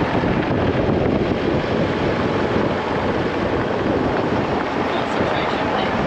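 Steady, loud wind buffeting the microphone of a moving four-wheel drive, mixed with tyre noise on a gravel road.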